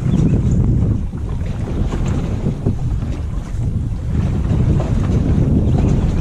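Wind buffeting the microphone in a steady low rumble, over water noise around a small plastic pedal boat.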